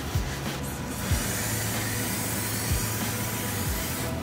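Background music with a steady kick-drum beat, under a continuous aerosol spray hiss that starts about a second in and cuts off at the end.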